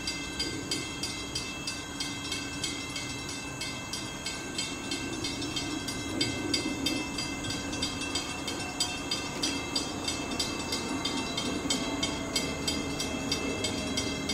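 CT Rail Hartford Line diesel push-pull train approaching the platform, its low rumble growing slightly as it nears. Over it a bell rings steadily with rapid, even strikes.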